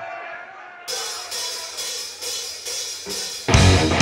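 Live rock band starting a song: a steady hi-hat and cymbal ticking of about three beats a second. About three and a half seconds in, the full band comes in loudly with distorted electric guitars and drums.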